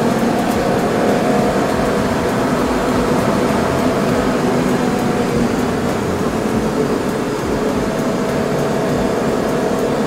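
A BMW E30 325i's 2.5-litre straight-six pulling steadily under load, heard from inside the cabin over road and wind noise. Its pitch holds fairly even, and the loudness dips slightly about seven seconds in before steadying again.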